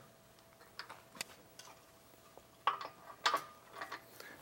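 A handful of faint, separate clicks and taps from a Yakima SwingDaddy swing-away hitch bike rack as its swing arm is locked and tightened back in place.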